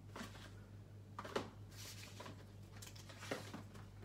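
Faint rustling of paper and card being handled, with a few light taps, as a sheet of foam adhesive dimensionals is picked up, over a low steady hum.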